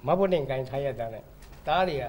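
Only speech: a man talking into a handheld microphone in short phrases, with a brief pause about halfway through.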